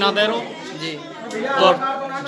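Speech only: a man talking, with other voices chattering alongside.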